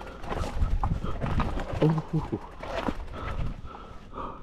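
Electric mountain bike knocking and rattling over rocks and dry leaves, irregular clatters throughout, with the rider's short grunts and breaths about two seconds in.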